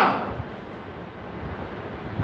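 A pause in a man's speech: the end of his last word dies away at the start, then a steady, soft hiss of room and microphone noise.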